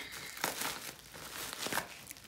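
Packaging crinkling and rustling as a perfume parcel is unwrapped by hand, in short irregular crackles.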